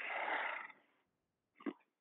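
A speaker's audible breath over a teleconference phone line, a breathy rush lasting under a second, then a short mouth click shortly before speech resumes.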